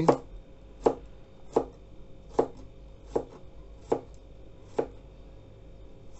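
Kitchen knife slicing garlic cloves on a plastic cutting board: sharp knocks of the blade against the board at an even pace, a little under one a second, seven strokes, the last about a second before the end.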